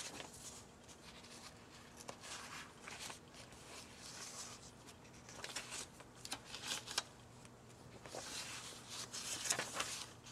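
Paper pages of a handmade junk journal being turned one after another, a run of short swishing and rustling page turns with a few light taps.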